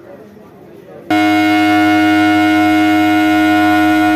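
Loud, steady air-horn blast from an Indian Railways EMU-type inspection car, starting about a second in and held for about three and a half seconds as a chord of two main tones. Voices are heard on the platform before it.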